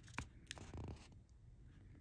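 Faint handling of a paper sheet in the hand: two small clicks and a light rustle in the first second, then near silence.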